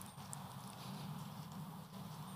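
Faint background with no speech: a steady low hum under light hiss, with a few tiny ticks.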